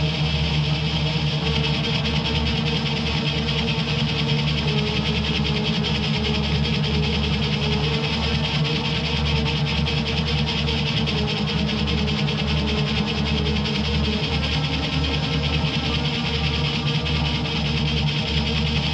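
Black metal instrumental with distorted electric guitars, playing steadily without vocals.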